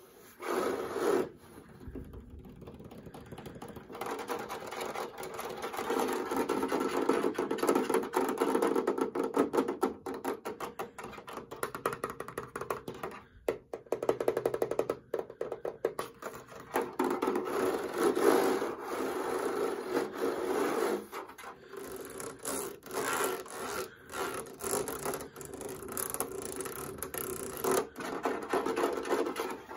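Fingertips and nails rapidly scratching and tapping on the plastic casing and touch control panel of a tower fan, in a dense, continuous run of strokes. It is quieter about two to four seconds in, and there is a burst of quick separate taps near the middle.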